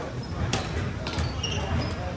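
Badminton rally on a hardwood gym court: several sharp racket strikes on the shuttlecock and short high sneaker squeaks as players move, over a background of voices.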